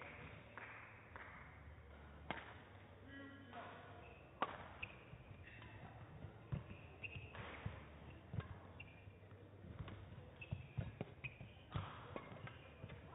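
Badminton rally: sharp cracks of rackets striking the shuttlecock, the first about two seconds in and then every second or two, with court shoes squeaking and footfalls on the hall floor between shots.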